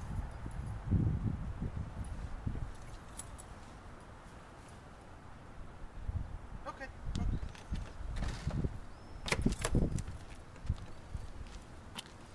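Thumps and rustling of a large dog climbing into and moving about a car's cargo area as it is handled at the open tailgate, with a few sharp clicks about nine to ten seconds in. A low voice murmurs at times.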